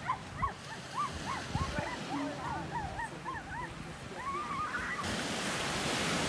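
Surf breaking on a sandy beach, the wash growing louder near the end, with a run of short, high, rising-and-falling squeaky calls, about two or three a second.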